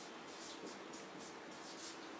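Marker writing on a whiteboard: a quick run of short, faint, hissy strokes, about three or four a second, as figures are written.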